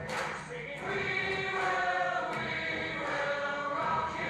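Several voices singing together in held notes, like a choir, with a few short sharp taps.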